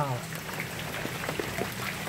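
Steady rain falling on floodwater, with many small scattered drop ticks.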